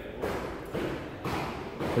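Workshop background noise with a few soft thuds spread through it.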